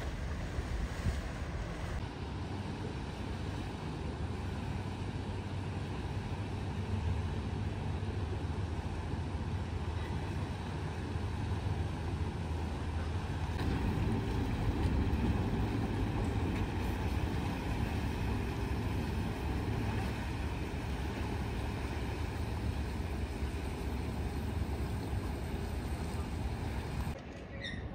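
Motor yacht engines running with a steady low drone under a haze of water and wind noise, growing louder about halfway through as the boat passes close.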